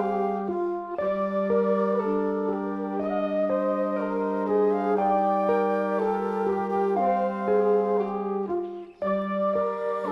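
A jazz wind section of flute, trumpets, trombone and saxophone plays slow, sustained chords that shift every second or so over a steady held low note, a pedal point. The low note breaks off briefly about a second in and again just before the end.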